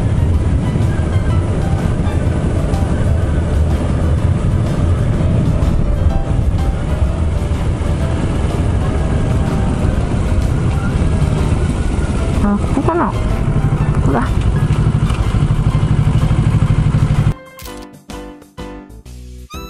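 Kawasaki Ninja 650 parallel-twin engine running steadily while the motorcycle is under way, with a brief rise in engine pitch about thirteen seconds in. The sound cuts off suddenly near the end.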